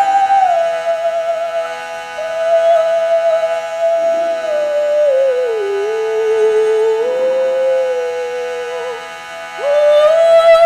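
A solo female voice singing a slow chant in long held notes, sliding down in pitch about halfway through and back up near the end, with short breaks for breath. Under it a brass bell on the lectern keeps up a steady metallic ringing of several fixed tones.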